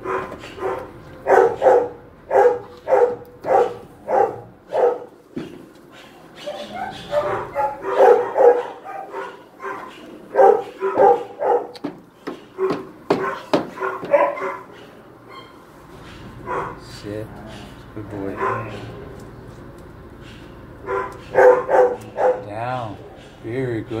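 Dog barking in bouts of short, evenly spaced barks, about two a second.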